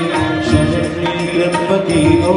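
Live Indian devotional-style song: sustained sung vocal line over a tabla rhythm and an electronic keyboard, in the manner of a Marathi wedding song.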